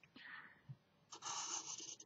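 Felt-tip marker drawn across card, a faint short scratch near the start and then a longer stroke of about a second in the second half as a line is drawn.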